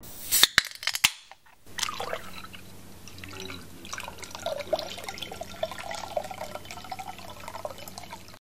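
Three sharp clinks in the first second, then after a short pause liquid dripping and trickling over a steady low hum.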